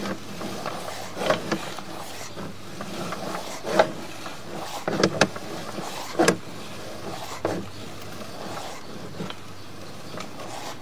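Sewer inspection camera's push cable being pulled back out of the drain line, giving irregular knocks and rubs, about six of them, over a steady low hum. The loudest knocks come near the middle.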